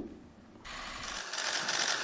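After a brief near silence, many camera shutters start clicking in a rapid, continuous patter, as press photographers shoot a posed photo call.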